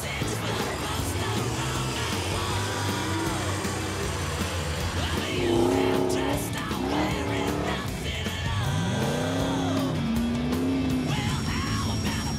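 Off-road 4WD engines revving as the trucks climb and crawl, with a rising rev about three-quarters of the way through, mixed under background music with a steady beat.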